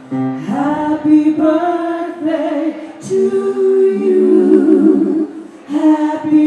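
Three women singing in harmony into microphones, with long held notes and several voices sounding together, and a short pause between phrases near the end.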